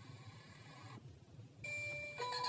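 Faint tail of a channel-logo jingle's music, a short lull, then the next logo jingle starting near the end with a held high beep-like tone over a lower note.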